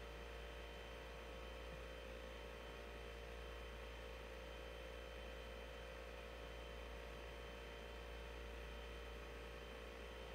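Steady low electrical hum with a faint even hiss, unchanging throughout, with no distinct sound events.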